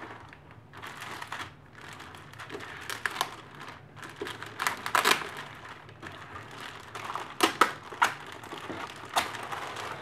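Plastic bag wrapping crinkling and rustling as a hand pulls at it around a boxed projector, in irregular bursts with sharper crackles, loudest about five seconds in and again near eight seconds.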